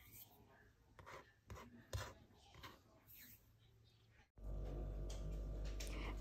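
Faint, scattered light taps and rubs of small objects being handled on a tabletop, with near silence between them. After a sudden change about four seconds in, a steady low electrical hum with room noise.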